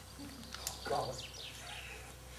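Faint songbird chirps, a few short falling calls, with a single sharp click just before them.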